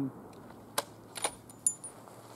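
Three sharp metallic clicks about half a second apart, the last with a brief high ringing clink: a rifle bolt being worked after the shot.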